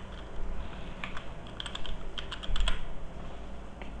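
Computer keyboard being typed on: a quick run of keystrokes starting about a second in and ending before three seconds, over a low steady background hum.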